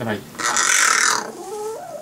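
Hooded crow giving one loud, harsh, hissing rasp lasting under a second, about half a second in, which the owner likens to a cat and calls barking; a short lower call follows near the end.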